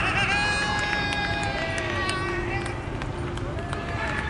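People shouting on a cricket field while the batsmen run between the wickets: high, drawn-out calls in the first two and a half seconds, with a few sharp knocks.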